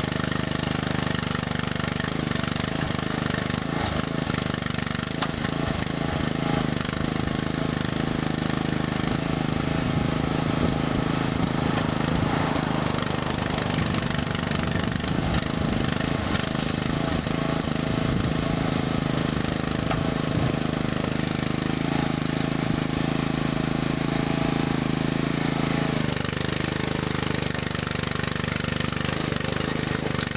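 Engine of an ATV-mounted mini backhoe running steadily at constant speed while the hydraulic boom and bucket dig a trench. Its tone shifts slightly a few seconds before the end.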